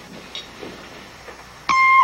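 Quiet for most of the time, then near the end a single high tone starts suddenly and holds steady.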